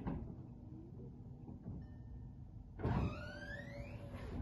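Powered soft top of a VW Beetle convertible finishing its closing cycle: a knock as the roof settles, then about three seconds in a louder whirring whine that rises in pitch for about a second as the mechanism runs.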